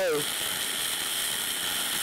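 Aluminum MIG welding arc running with a steady hiss, the gun held a little further back from the work. This is the sound the welder listens to when finding the sweet spot of contact-tip-to-work distance.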